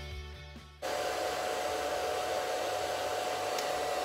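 Handheld hair dryer switched on about a second in, then running steadily: a rush of air with a constant tone, over background music.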